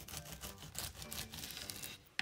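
A serrated bread knife sawing back and forth through the crust of a dense, flourless nut-and-seed loaf. The cut makes a quick run of scraping, crunching strokes.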